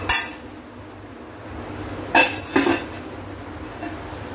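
Stainless-steel lid being fitted onto a Wonderchef double-walled stainless-steel milk boiler, metal clinking on metal. There is one clink at the start, then two clinks about half a second apart a little over two seconds in, and a faint tick near the end.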